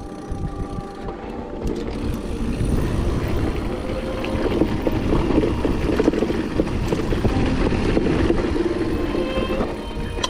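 Riding noise from an electric mountain bike on a dirt singletrack: wind rushing over the action-camera microphone, tyres rolling on dirt and rattles and knocks from the bike over bumps. It gets louder and busier from about four seconds in as the ride picks up.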